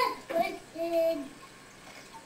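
A child singing a few short notes, the last one held for about half a second.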